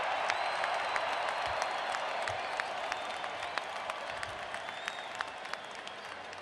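Large stadium crowd applauding, a dense patter of clapping that slowly dies down.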